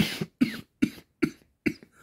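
A man coughing: a run of five short, dry coughs in quick succession, the first the loudest.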